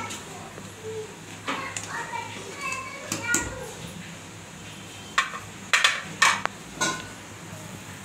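A metal spoon knocking and clinking against a steel cooking pan while the kadhi is stirred: about six sharp clinks in quick succession a little past the middle. Children's voices can be heard earlier.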